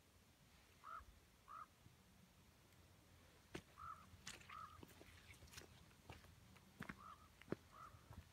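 Faint bird calls over near silence: three pairs of short calls, each pair about three seconds after the last, with a few light ticks in the second half.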